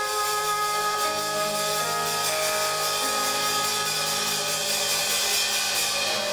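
Live band music: a trumpet holds a long high note over electric bass and drum kit, the note ending about four and a half seconds in while the cymbals swell.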